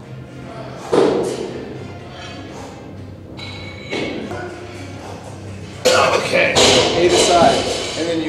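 A thud about a second in and a lighter knock at about four seconds, then music with voices over the last two seconds.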